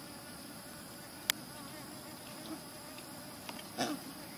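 Insects droning steadily at a high pitch, with a sharp click about a second in and a brief louder sound near the end.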